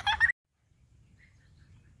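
A short high-pitched cry that rises in pitch and is cut off abruptly about a third of a second in. After it there is only faint low background noise.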